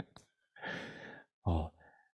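A man's breathy exhale, like a soft sigh or a quiet laugh out through the nose, followed by a short vocal sound about one and a half seconds in.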